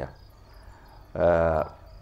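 Crickets chirring steadily in the background, a thin high insect sound, with a man's short drawn-out hesitation vowel about a second in.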